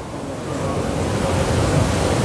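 Steady rushing hiss with a low hum underneath, growing slowly louder through the pause: the recording's background noise.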